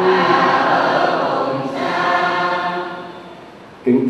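A choir singing a short liturgical response in reply to the celebrant's chant, in two phrases, dying away about three and a half seconds in.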